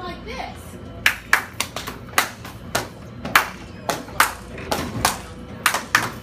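A run of sharp percussive taps in an uneven rhythm, about two to three a second, starting about a second in.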